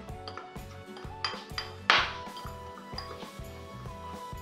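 Metal fork scraping and clinking against a glass bowl while stirring a dry, powdery bath-bomb mixture and pressing out lumps, with a sharper clink about two seconds in. Background music with a steady beat plays underneath.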